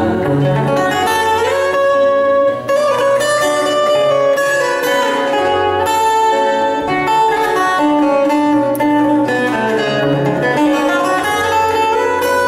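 Two acoustic guitars playing an instrumental passage together: a melody with long held notes over plucked accompaniment.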